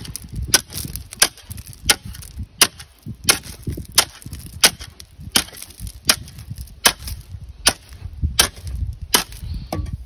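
Steel shovel blade striking a chunk of old concrete pier again and again in light, evenly spaced blows, about one and a half a second. The concrete breaks up under the light blows.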